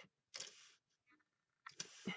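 Faint handling noise of paintbrushes: a short scraping rustle, then a couple of light clicks near the end.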